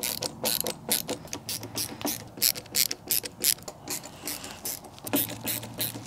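Kobalt double-ratcheting screwdriver clicking as it drives wood screws into an MDF subwoofer box: runs of quick ratchet clicks with short pauses between strokes.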